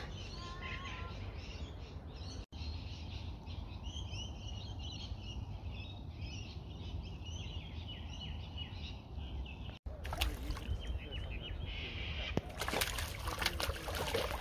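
Birds chirping and calling over a steady low outdoor rumble, with the sound cutting out abruptly twice. Near the end, louder irregular noise with clicks sets in.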